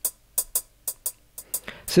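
Sampled hi-hat pattern from a virtual drum kit playing eighth notes, about four hits a second, with swing and randomized velocity and timing: the hits vary in loudness and land slightly unevenly, giving a humanized, less mechanical groove.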